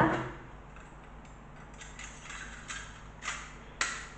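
A few faint, scattered clicks and knocks of tools and objects being handled at a worktable, with a sharper knock near the end.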